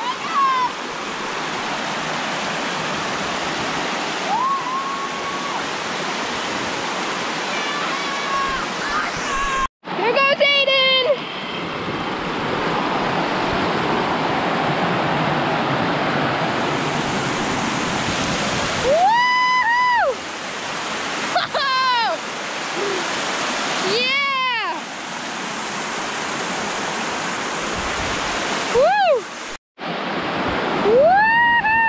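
Steady rush of water pouring over a broad rock slide of a waterfall, with children's drawn-out shouts and whoops rising and falling several times. The sound cuts out briefly twice, about ten seconds in and near the end.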